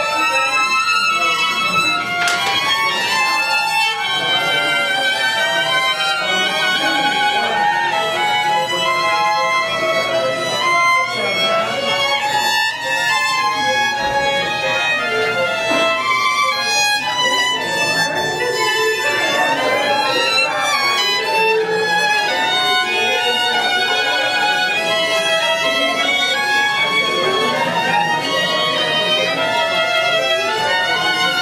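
A violin playing a melody of sustained notes with vibrato, each note's pitch wavering steadily.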